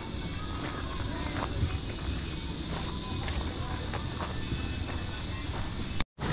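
Steady outdoor ambience: a high insect drone with faint, indistinct voices in the background and footsteps on gravel.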